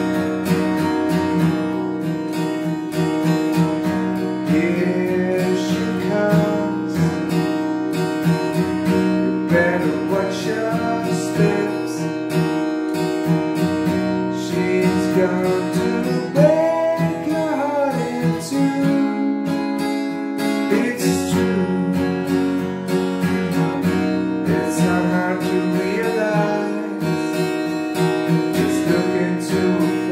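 Acoustic guitar strummed steadily in a slow ballad rhythm, capoed at the second fret, moving through chords such as Dmaj7sus2 and A major 7 over an E bass.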